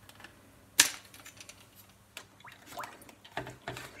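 Plastic clicks and light knocks as a clear plastic racking tube and bottling wand from a beer-brewing kit are handled. There is one sharp click about a second in, then a few fainter clicks near the end.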